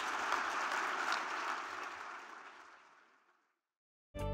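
Audience applauding, a dense steady patter of many hands that fades away to silence over the second half.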